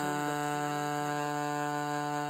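A sung vocal note held steady on one pitch, a lead vocal with harmony voices generated from it by Reason's Neptune pitch adjuster and vocal synthesizer, played from MIDI keyboard notes.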